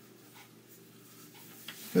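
A pause in a man's spoken monologue: faint low background noise with a couple of small, soft sounds, the clearest a brief tick about a second and a half in, before his voice returns at the very end.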